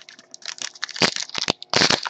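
Foil wrapper of a baseball card pack crinkling and tearing as it is opened by hand. It makes a run of irregular crackles, loudest about a second in and again near the end.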